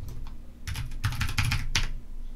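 Typing on a computer keyboard: a quick run of about ten keystrokes, starting about two-thirds of a second in and lasting about a second.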